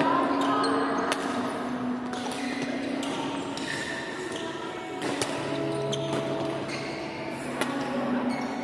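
Badminton rally in a reverberant sports hall: several sharp racket strikes on the shuttlecock, with footwork on the wooden court floor and voices echoing around the hall.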